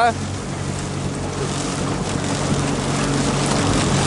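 Outboard motor of a coaching launch running steadily at low speed, a low even hum under the rush of wind and water.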